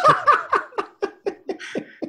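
A person laughing in a run of short bursts, about five a second, fading toward the end.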